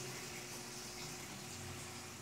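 Faint, steady running water in an aquaponics system, water flowing through the plumbing back into the fish tank, under a steady hum.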